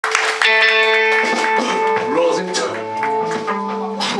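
Live rock band playing amplified: electric guitars ringing out held notes and chords, with drums and a voice over the top.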